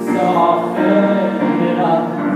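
A man singing with his own grand piano accompaniment, a slow song with held notes.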